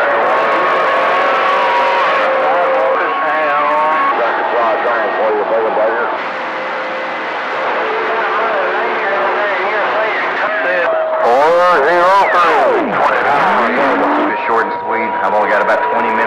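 CB radio receiver tuned to channel 28 (27.285 MHz), carrying garbled, overlapping voices of distant stations coming in on skip. Steady whistling tones from competing carriers sit under the voices. A swooping sweep of pitch, falling then rising, comes through from about eleven to fourteen seconds in.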